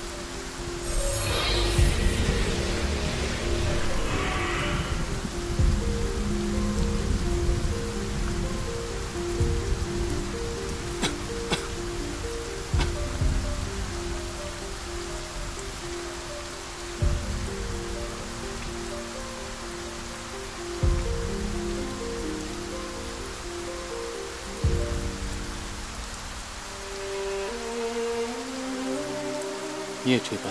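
Steady heavy rain under a slow background music score of long held notes, with a roll of thunder in the first few seconds.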